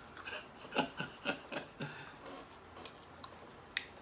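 Chewing and crunching of candy-shelled M&M's chocolates, a run of short crunches in the first couple of seconds, then a single sharp click near the end.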